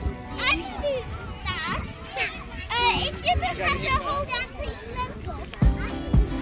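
Children's high voices calling and squealing at play, over background music whose thumping beat comes in near the end.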